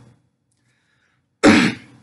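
A man clearing his throat: the fading end of one clear right at the start, then a second short, loud clear about one and a half seconds in.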